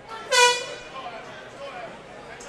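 A single short horn blast about half a second in, signalling the start of the round, over a background of crowd voices.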